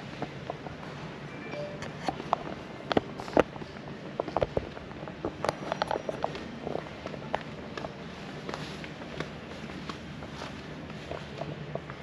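Footsteps on a polished concrete floor, an irregular run of clicks and knocks, over a steady low hum of room noise.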